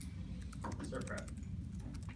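Typing on a laptop keyboard: an irregular run of quick key clicks, with a brief murmured voice about a second in, over a steady low room hum.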